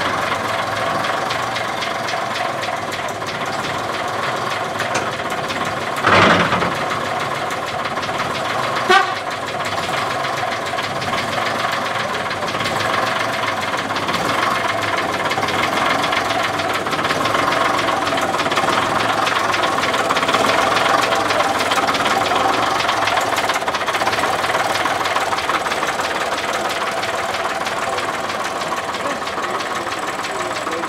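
Engine of a vintage Midland Red single-deck bus running steadily at tickover. Two short knocks stand out, about six and nine seconds in.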